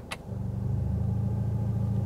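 Mercedes-AMG A45 S's 2.0-litre turbocharged four-cylinder idling. After a short click, the note steps up and turns louder and steady as Sport+ mode is selected.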